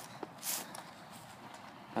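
A single soft rustle of a footstep in dry grass about half a second in, then faint hiss.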